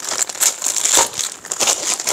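Clear plastic wrapping on a packed bundle of cloth crinkling as hands handle and press it, with irregular crackles and a few sharp knocks.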